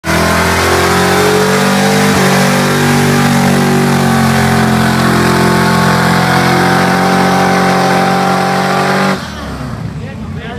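A car's engine held at high revs during a burnout, with the rear tyres spinning on pavement. The sound stays loud and nearly steady in pitch, then cuts off abruptly about nine seconds in.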